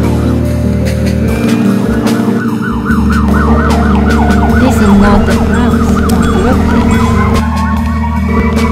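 A siren warbling rapidly up and down over a layered music bed, starting about a second and a half in; near the end it slows into long rising and falling wails.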